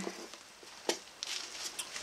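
Faint handling noise from a metal avionics control panel being turned in the hands: one sharp click a little under a second in, then light scattered rustling.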